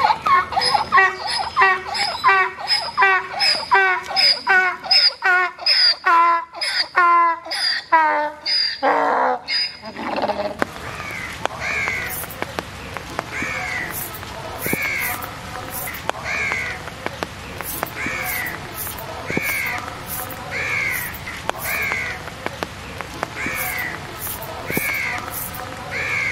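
A donkey braying: a long run of quick, rasping hee-haw notes that slow and fall in pitch, then stop about ten seconds in. A crow then caws repeatedly at an even pace.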